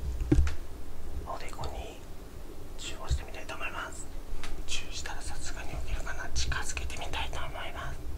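A man whispering softly in short phrases close to the microphone, to wake a sleeping person gently.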